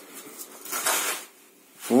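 Sand scraping and rustling as a long metal angle bar is shifted and pressed into a levelled sand bed, with a short rasping scrape about halfway through.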